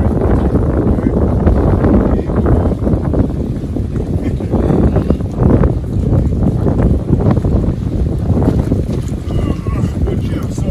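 Wind buffeting the microphone: a loud, low rumble that surges and eases in gusts.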